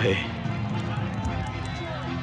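Film soundtrack: a man's shouted word ends just after the start. Dramatic background music follows, over a continuous din of fire and running footsteps.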